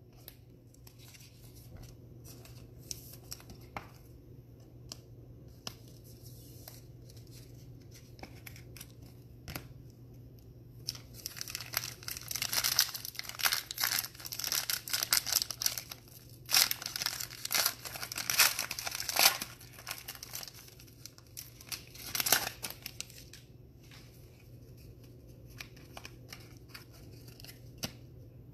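Hands tearing open and crinkling the foil wrapper of a 2020 Prizm football card pack, with light clicks and rustles at first and then loud crinkling bursts for about ten seconds in the middle. A steady low hum runs underneath.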